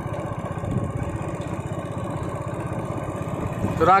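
Small single-cylinder motorcycle engine running at a steady, even speed while riding, heard from on the bike, with a fast regular pulsing and road noise underneath.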